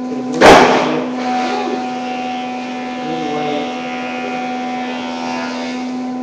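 A steady electrical hum throughout, broken about half a second in by one brief, loud clatter, the kind of noise made by handling or knocking something close to the microphone.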